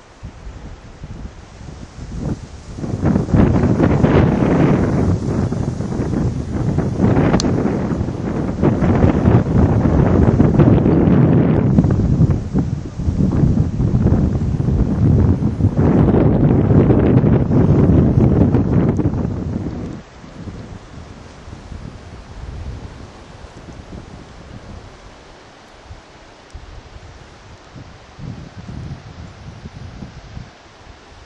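Wind buffeting the microphone in loud, uneven gusts for most of the first two-thirds, then dropping suddenly to a quieter, steady rush of wind.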